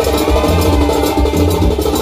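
Live band music played loud through a PA system, with hand drums, a heavy bass and a steady pattern of crisp high percussion strokes.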